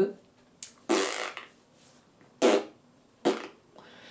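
A woman's mouth noises: three short puffs of breath blown out through the lips, the longest and breathiest about a second in, then two shorter ones about two and a half and three and a quarter seconds in.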